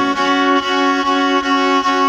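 A Black Sea kemençe, the slim 'kılçık' kind, being bowed: a steady ringing double-string drone with short notes repeated over it a few times a second.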